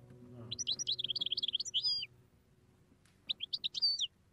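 A songbird twittering in quick, high chirps: a run of about a second and a half, a pause of about a second, then a shorter burst near the end.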